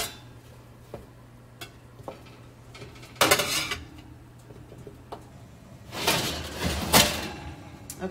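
A metal spatula clinking and scraping on a ribbed metal sheet pan as roasted squash slices are flipped, with light taps and a short scrape about three seconds in. Near the end comes a longer, louder metallic scrape ending in a clunk as the sheet pan goes back onto the oven rack.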